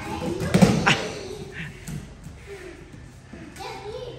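A dull thud on padded training mats about half a second in, with a second, lighter knock just after, amid children's voices and movement in a large practice hall.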